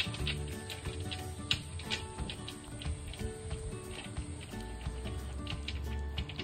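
Background music with steady held notes. Over it, a dog licks an ice cube held in a hand, making irregular wet clicks and taps.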